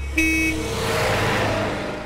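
A short cartoon car-horn honk near the start, then a rushing car sound that swells and fades away as the car drives off.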